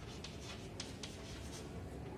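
White chalk writing on a chalkboard: a quick run of short scratches and taps as the strokes of a word are written, thinning out near the end.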